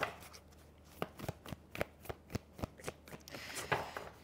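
A deck of tarot cards being shuffled in the hands: a quick, irregular run of soft card clicks and slaps, denser from about a second in.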